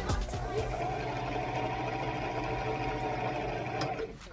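Electric home sewing machine running steadily for about four seconds, then stopping suddenly; its needle is unthreaded, so it runs without making a stitch.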